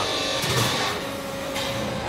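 Steady mechanical noise of factory machinery in a rebar straightening and cutting plant, with a faint high whine and a low steady hum.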